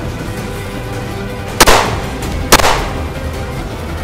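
Two gunshots about a second apart, each a sharp crack with a short ringing tail, over steady background music.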